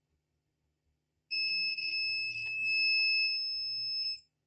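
Digital multimeter's continuity beeper giving one steady high-pitched beep, starting just over a second in and lasting about three seconds, while the probes are on a resistor of about 10 ohms. A resistance that low is enough to set off the continuity tone.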